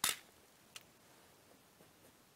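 A sharp clatter as a small dish of maize grains is set down on a hard, glossy tabletop, followed by a single faint click less than a second later.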